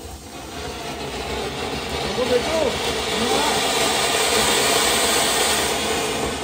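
Anar (flower-pot fountain firework) burning, spraying sparks with a steady hiss that builds up over the first couple of seconds.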